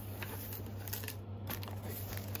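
Crinkling and rustling of packaging as hands push back cardboard box flaps and shift plastic-wrapped items and chip bags inside an opened parcel, a run of small crackles and scrapes.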